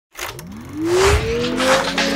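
Synthesized intro sound effect for an animated logo: an electronic tone sweeping up in pitch over about a second and a half, then holding, with whooshing noise over it.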